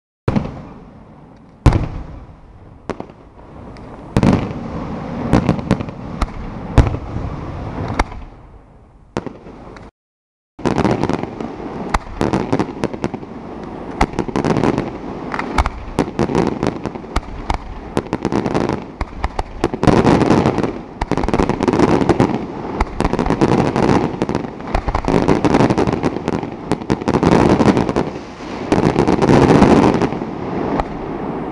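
Daytime fireworks display: aerial shells go off in separate loud bangs, each dying away, for the first ten seconds. After a short cut to silence, a dense barrage of rapid reports and crackling follows and grows heavier toward the end.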